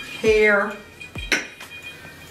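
Drinking glasses set down with a sharp clink on a glass-topped coffee table, about a second and a quarter in, after a brief vocal sound.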